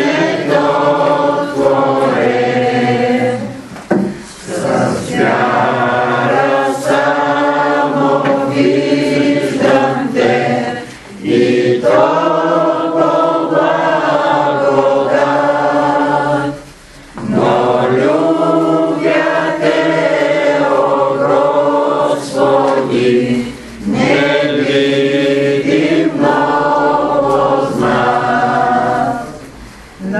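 A congregation singing a hymn together, with no clear accompaniment, in long sustained phrases and brief pauses between lines.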